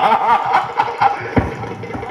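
A man's voice in the sung, declaimed style of a bhaona performer, wavering in pitch as it comes through loudspeakers. A few sharp strikes follow, then one deep thump about one and a half seconds in.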